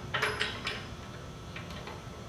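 Steel die and tool holder of a Mechammer MarkII planishing hammer clinking together as the die is set back in place: a few sharp metal clicks in the first half second or so, then only low room noise.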